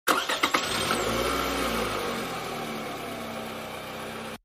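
Car engine sound effect: a car starting up with a few sharp clicks at the very start, then running and pulling away, slowly fading.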